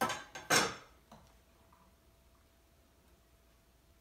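A metal spoon and glassware clattering twice in quick succession, then one fainter knock about a second in.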